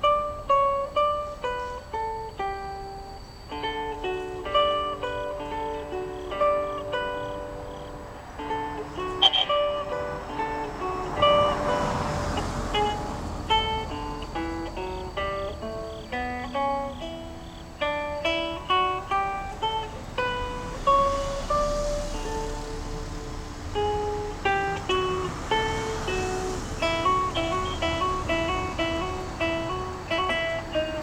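Solo acoustic guitar playing a fingerpicked classical sonata, single plucked notes forming a running melody over bass notes.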